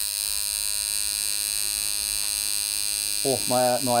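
Tattoo machine buzzing steadily while a line is inked into the skin of a man's chest.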